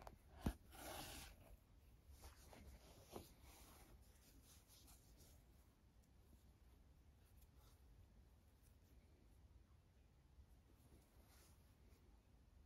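Near silence with faint rustling of hands handling a crocheted yarn toy and drawing yarn through with a needle. A single sharp click comes about half a second in, with a brief rustle just after.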